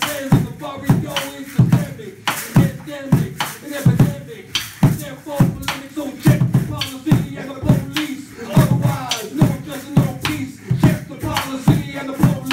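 A tall upright skin-headed drum is struck with a stick in a steady beat, about two to three strokes a second. A hand rattle and a voice on a microphone go along with it.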